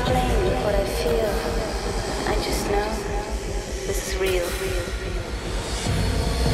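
Disco DJ-session audio: a deep, steady bass under a noisy, rumbling wash with gliding, wavering pitched sounds on top.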